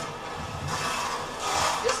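Corded electric screwdriver running for about a second, driving a screw into a TV-box case, over the general noise of an assembly floor.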